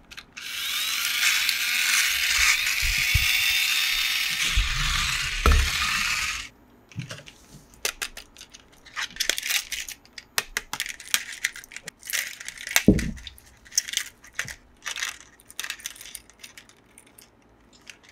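Toy race car's pull-back motor whirring as its wheels spin freely, a loud mechanical whir with a wavering pitch that runs for about six seconds and then stops abruptly. After that come small plastic clicks, taps and handling sounds, with one heavier knock.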